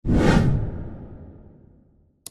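Whoosh sound effect from an intro animation: a sudden swoosh, loudest in the first half-second, then fading away over about a second and a half.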